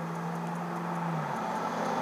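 A car driving past on the street, its engine hum steady and then dropping a little in pitch just over a second in as it goes by.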